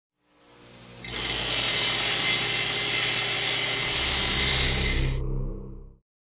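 Channel logo intro sound effect: a swell that breaks into a sudden loud hit about a second in, then a dense hissing, grinding-like noise over a low steady drone. The noise cuts off about five seconds in, and the low rumble fades away.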